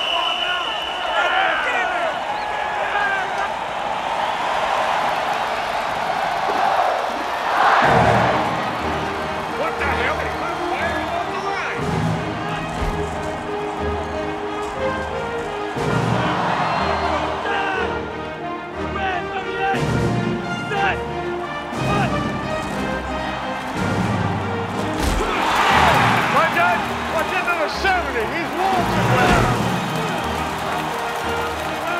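A large stadium crowd cheering and shouting, with film-score music coming in about eight seconds in and running under the crowd, which swells louder several times.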